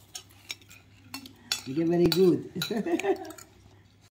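A metal fork clicking and scraping against a glass plate of spaghetti, several separate light clinks. In the middle a person's voice makes a short murmur and laugh, the loudest sound.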